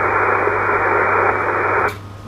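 Steady hiss of 20-metre SSB band noise from the Icom IC-7200 transceiver's speaker, the receiver open with no station talking. Near the end it cuts off suddenly with a short click as the receiver is muted when the microphone is keyed to transmit.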